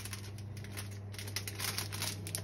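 Plastic herb packet crinkling and rustling in the hands as it is pulled open, a dense run of small irregular crackles, over a steady low hum.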